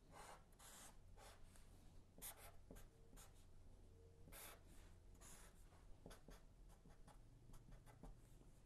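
Black felt-tip marker drawing on paper: a faint series of short scratching strokes as lines and symbols are drawn.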